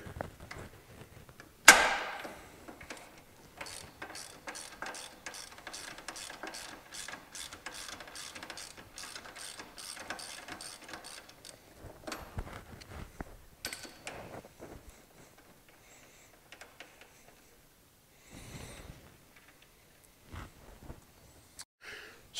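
Ratchet wrench with a 17 mm socket loosening the steering-shaft nut on a go-kart. There is one sharp click about two seconds in, then a long, even run of ratchet clicks for about eight seconds, then a few scattered knocks as the nut comes off.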